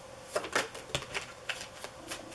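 A tarot deck being shuffled by hand, overhand: the cards click and slap together in about six short, unevenly spaced taps.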